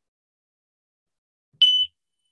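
A single brief, high, steady electronic beep about one and a half seconds in: the conditioned-stimulus tone of a mouse fear-extinction experiment, played back from the study's video.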